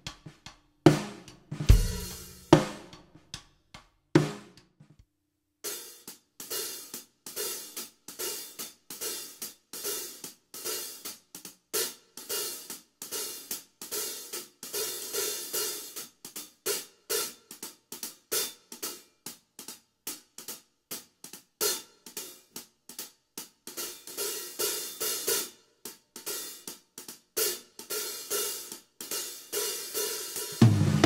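A pair of Zildjian K hi-hats: a few single strikes left to sizzle in the first seconds, then, after a short pause, a drumstick plays them nonstop in an old-school jazz pattern of rapid, even strokes.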